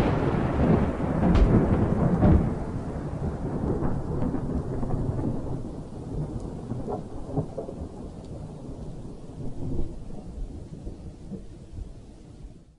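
Logo-intro sound effect: a deep rolling rumble with scattered crackles, slowly dying away.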